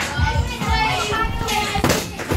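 Children's excited voices and chatter over faint background music, with a sharp knock near the end.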